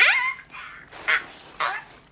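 A woman's high-pitched excited squeal that sweeps sharply upward in pitch, followed by two short breathy sounds.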